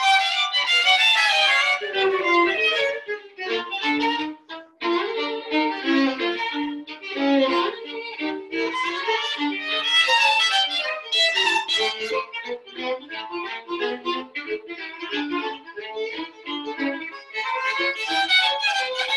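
Two violins playing a duet in quick, short notes, one playing lower under the other's higher line.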